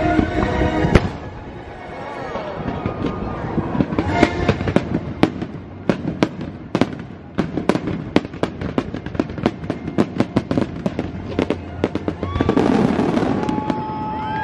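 Aerial fireworks bursting, a dense run of sharp bangs and crackles coming in quick succession, over a show soundtrack.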